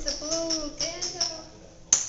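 Indistinct voices talking, then a single sharp click just before the end.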